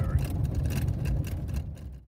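Four-wheel-drive pickup truck with chains on its rear tyres driving on a snow-covered road, heard from inside the cab: a steady low rumble that fades out near the end.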